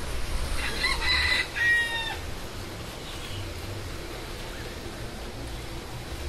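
A rooster crowing once, a call of about a second and a half starting just over half a second in.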